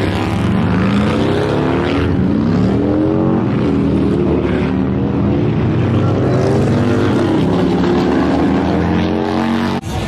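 Several motorcycle engines running together and revving, their pitch repeatedly rising and falling. The sound breaks off abruptly near the end.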